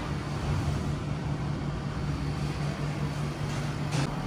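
Steady low mechanical hum with a faint hiss behind it, the background drone of workshop machinery.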